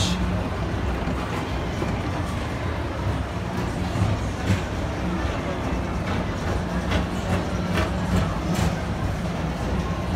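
A Walt Disney World PeopleMover car running along its elevated track, driven by linear induction motors in the track. It gives a steady low hum under a wash of noise, with a few sharp clicks from the car and track.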